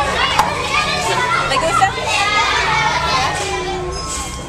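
Many children's voices chattering and calling out over one another, with a couple of brief sharp knocks.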